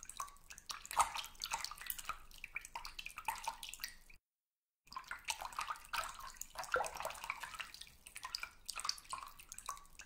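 Water in a filled bath sloshing and dripping, with many small, irregular splashes and drips. The sound drops out completely for about half a second near the middle.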